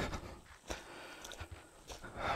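Faint, even background hiss with a single light click about two-thirds of a second in.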